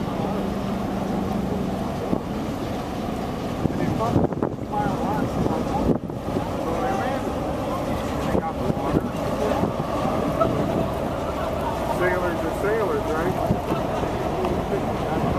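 Steady low rumble of a large cargo ship passing close by, with wind buffeting the microphone and faint voices talking in the background.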